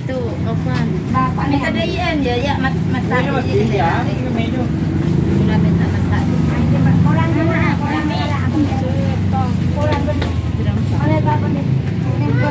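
Indistinct voices talking over a steady low engine hum from a motor vehicle running nearby.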